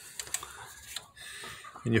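Faint, irregular light clicks and rustling.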